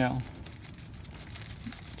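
Potting soil being shaken through a hand-held stainless steel mesh sifter: grains scratch and rattle against the wire mesh in a quick, even rhythm of short strokes.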